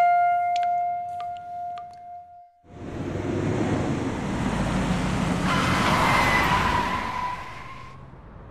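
Music with a held note fades out. About three seconds in, a vintage black sedan drives up: a dense rush of engine and tyre noise starts suddenly, holds for about four seconds and eases off near the end.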